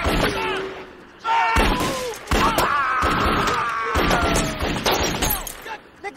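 Gunfire hitting a car: sharp impacts and glass shattering, with men screaming in panic over it. A lull comes about a second in, then a loud burst of impacts follows.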